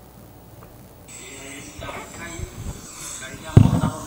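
Sound played through a loudspeaker being set up: a hiss comes on suddenly about a second in, then a voice, and a loud crackling pop near the end.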